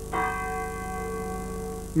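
A church bell struck once, ringing on and slowly fading; it marks noon.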